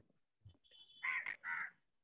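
Two faint, short, harsh bird calls in quick succession about a second in, with a thin steady high tone just before them.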